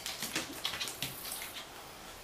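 A quick, irregular run of light taps and scratches over about a second and a half, then fading out.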